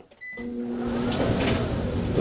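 A short control-panel beep as the gas dryer's start button is pressed. The drum motor then starts under a heavy surge load of wet clothes, a steady hum giving way to rising running noise as the drum comes up to speed. The startup is strained: the power station struggled to start the dryer but did it.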